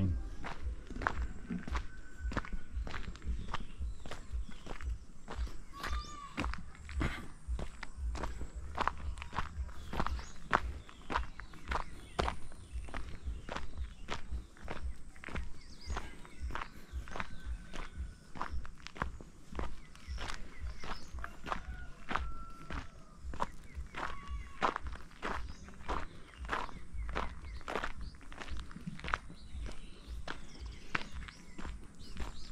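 Footsteps of a person walking on a dirt road, a steady tread of about two steps a second. A few short high calls are heard now and then.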